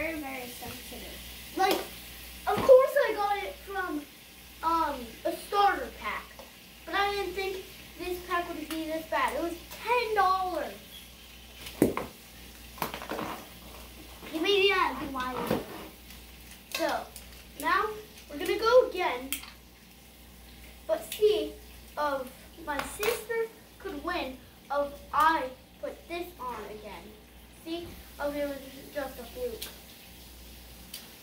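Children talking, with a few sharp clicks of plastic toy parts being handled.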